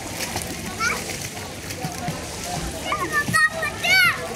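Children's shouts and squeals over steady splashing and sloshing of pool water as people swim. A few short high calls come about a second in and around three seconds, with the loudest shriek at the very end.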